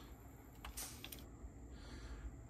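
Faint, small clicks from a cassette deck's tape transport mechanism being handled by hand, two of them close together about a second in, followed by a soft rustle.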